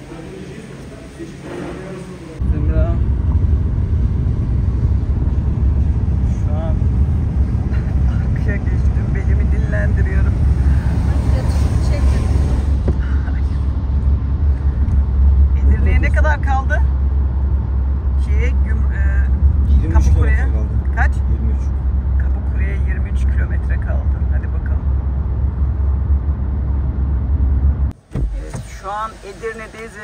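Steady low rumble of road and engine noise inside a car's cabin at highway speed. It starts suddenly a couple of seconds in and cuts off near the end.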